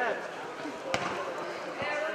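A football being kicked on artificial turf: one sharp thud about a second in and a fainter one near the end, over the voices of spectators.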